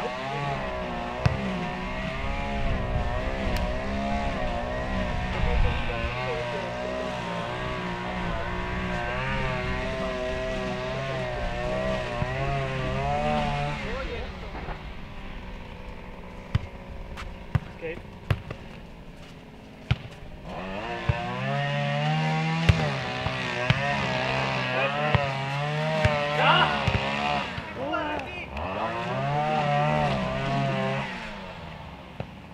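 A futnet ball being kicked and bouncing on the court: a dozen or so sharp single thuds scattered through the rally. Under them a motor engine runs with a wavering pitch, fading out midway and coming back.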